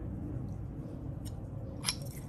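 A metal spoon clicks lightly against a granite mortar a few times, the clearest click near the end, over a low steady background hum.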